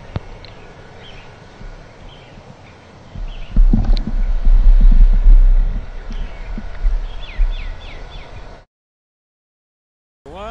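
Small birds chirping in short, falling notes over steady outdoor background noise. A low rumble comes in about three and a half seconds in and is the loudest thing. Everything cuts off suddenly near the end.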